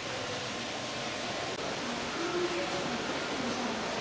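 Steady, even rushing noise of an indoor public space, with faint, indistinct voices in the background.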